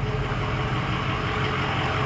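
Ford F-350's 6.0-litre V8 turbo diesel idling steadily.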